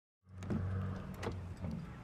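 Car rear door being opened: a steady low electric hum with several sharp clicks of the latch and door hardware, starting after a brief silence.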